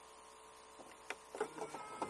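Quiet car-cabin room tone, then a few faint clicks in the second half from the Cabasse radio/CD head unit's buttons being handled.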